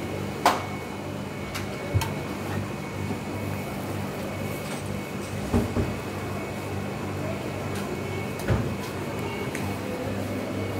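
A few sharp metal knocks and clanks as a ladle and a steel batter tray are handled and a waffle iron is closed, over a steady hum. The first knock, about half a second in, is the loudest, with others at about two, five and a half and eight and a half seconds.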